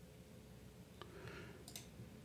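Near silence with a few faint computer mouse clicks: one about halfway through and two close together near the end.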